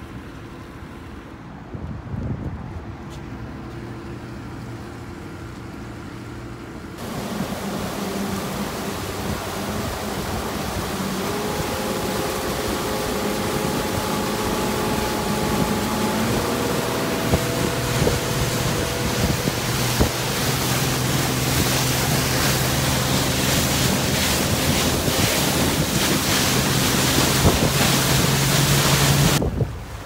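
Newly installed Yamaha 250 four-stroke V6 outboard motor running, quieter and lower for the first several seconds, then louder from about seven seconds in as the boat runs under way, with wind rush on the microphone and the splash of the wake.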